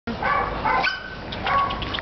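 Excited dogs giving a few short, high-pitched barks, two in the first second and another about one and a half seconds in.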